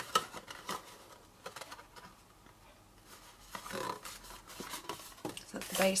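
Thin cardstock being folded and pressed together by hand: soft rubbing with scattered light taps and clicks as the glued panels of a paper box base are pressed down.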